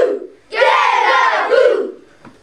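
A group of voices shouting together in unison: one phrase ends just after the start, and after a short pause a second phrase runs for over a second before dying away.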